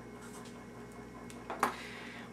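Faint strokes of a felt-tip marker drawing on a whiteboard over low room noise, with one brief sharp sound about one and a half seconds in.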